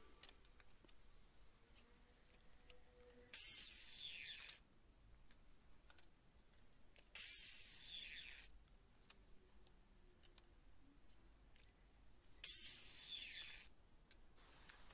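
Evolution mitre saw making three short cuts through pine bed slats, each a little over a second long and spaced a few seconds apart. The cuts sound faint and thin, with little low end, and near silence lies between them.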